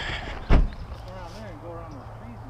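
A car's trunk lid slammed shut: one sharp thump about half a second in.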